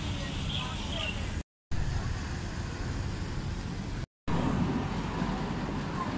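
Outdoor street ambience: steady road-traffic noise with faint voices. It is broken twice by brief, complete dropouts to silence at edit cuts, about a second and a half in and again about four seconds in.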